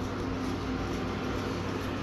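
A steady low rumble with a faint hum underneath.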